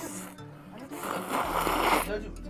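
A man slurping white soba noodles: a noisy slurp starting about halfway through and lasting about a second, over steady background music.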